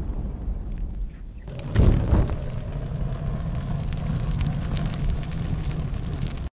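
Explosion-and-fire sound effects: a low rumble dies down after a boom, swells again about two seconds in, then runs on steadily with crackling, like burning fire.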